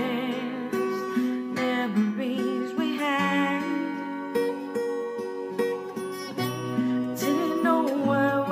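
A cappella music: layered voices sing held chords without words over a sung bass line that steps from note to note every second or so.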